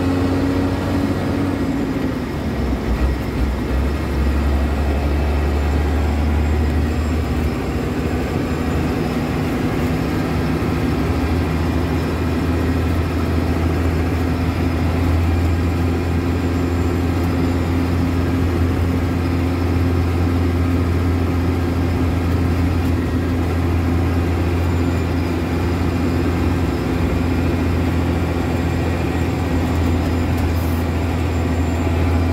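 Heavy truck's engine running at highway speed, heard from inside the cab: a steady low drone over road noise, its note dipping slightly about two seconds in.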